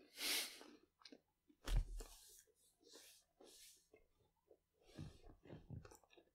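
Quiet breathing close to the microphone with small rustles and clicks, and a soft thump about two seconds in.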